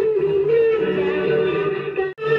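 A song: a singing voice holding long notes over a steady musical accompaniment.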